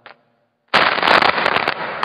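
A short click, a dead gap of about half a second, then a loud, dense burst of crackling noise lasting over a second.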